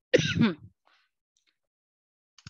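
A person clearing their throat once, a short rasping burst of about half a second near the start, from someone suffering from a cough and a sore throat.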